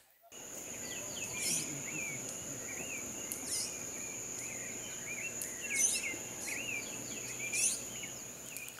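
Forest ambience: birds giving repeated short, curving whistled chirps, with a few higher sweeping calls about every two seconds, over a steady high-pitched insect drone.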